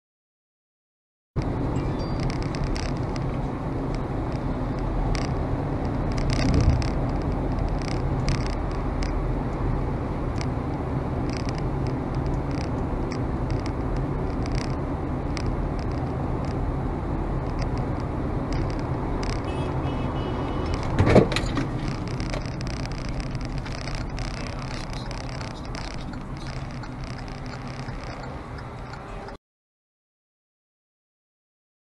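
Steady engine and road noise heard inside a moving car from a dashcam, with a dull thump about seven seconds in and a sharp, louder knock about 21 seconds in.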